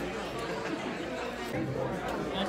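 Voices talking over each other in a busy restaurant dining room, with a nearer low voice coming in about a second and a half in.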